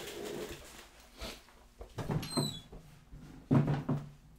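Knocks and thumps of someone getting up and leaving the room, with animal noises from cats fighting outside and a short high falling chirp a little past halfway.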